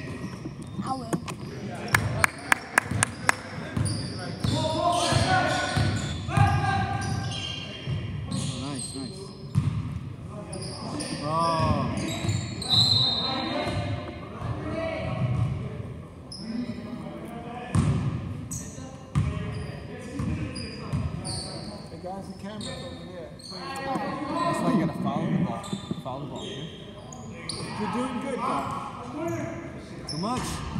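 Basketball game sounds in a large, echoing gym: a ball bouncing on the hardwood floor amid shouting voices, with a quick run of about six sharp knocks about two seconds in.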